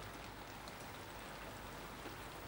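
Steady rain falling, a faint, even hiss.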